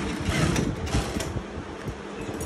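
Industrial single-needle sewing machine running as fabric is stitched: a fast mechanical rattle of the needle mechanism, with a few sharp clicks.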